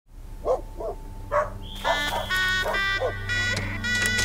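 A dog barking about seven times in short, separate calls. Soft music with held tones comes in about two seconds in and carries on under the barks.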